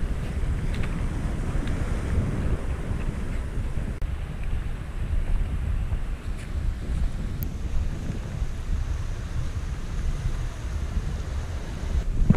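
Wind buffeting the microphone, a steady low rumble, over the wash of surf breaking on the rocks.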